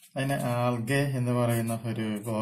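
A man speaking slowly, drawing out long syllables at a fairly even pitch.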